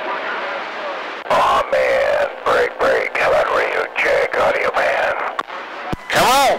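A voice coming over a CB radio receiver, thin and hissy with the words not clear. It follows about a second of open-channel static.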